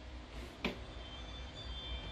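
A commercial glass swing door is pushed open with a click, then a Ring alarm sounds faint, steady high tones, over a low rumble. The tones are the alarm responding to the door's wired contact sensor opening, which shows the sensor conversion works.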